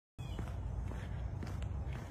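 A person's footsteps while walking, a few faint soft steps over a steady low rumble.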